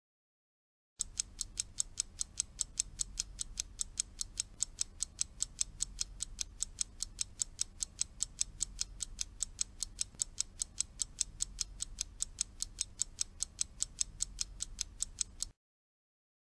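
Clock-style ticking sound effect, about four even ticks a second, starting about a second in and cutting off abruptly near the end. It times the pause left for the learner to repeat the line.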